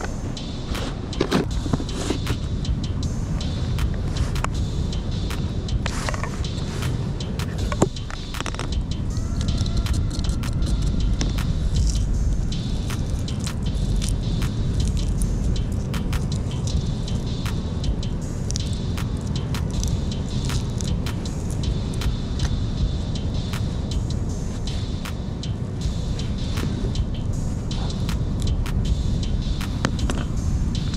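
Steady low rumble of wind and surf at the shoreline, with scattered small clicks and taps from hands working bait and fishing line close to the microphone.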